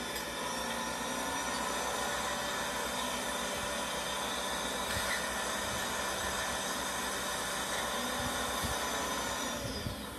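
Heavy machinery running steadily, the engine noise and hiss of a log loader unloading logs from a log truck, heard through a television's speaker. The sound changes abruptly just before the end.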